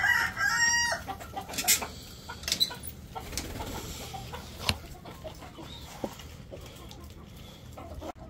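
A rooster crowing, the call ending about a second in, followed by scattered light knocks and rattles as a wire-mesh cage door with a padlock is handled.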